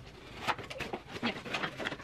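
Cardboard and paper packaging being handled and pulled apart: a quick, irregular run of rustles, scrapes and light knocks as a small product box and its cardboard insert come out of a shipping carton.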